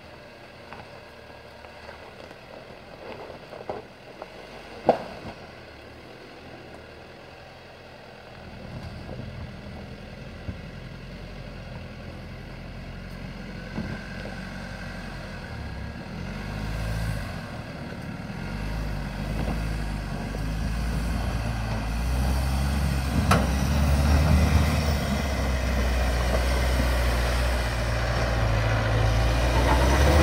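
Mitsubishi Pajero Sport's engine running under load as the SUV climbs a rutted dirt track, faint at first and growing steadily louder from about eight seconds in as it comes nearer. A couple of sharp knocks stand out, one early and one late.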